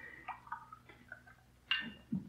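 Radio-drama sound effect of a glass of water being handled: a few faint light clinks, then one sharper glass clink with a short ring near the end.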